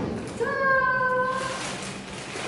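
A woman's drawn-out, high-pitched exclamation of surprise as a gift box is opened, about a second long and falling slightly in pitch, starting about half a second in. A brief papery rustle of the box's flaps comes just before it.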